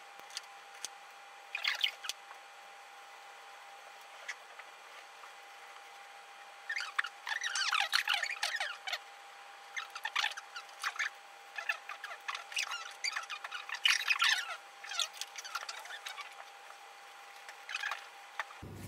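Felt-tip marker nibs scratching and squeaking across a shikishi card as colour is filled in. The strokes come in short bursts, busiest in the middle stretch, over a faint steady hum.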